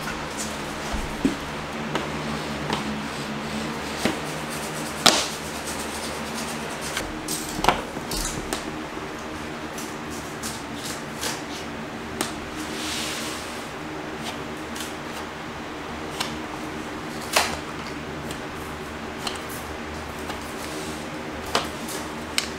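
Scattered sharp clicks and knocks from handling a drywall sheet and a magnetic outlet locator against it, the loudest about five seconds in, again a couple of seconds later and near the end, over faint steady background music.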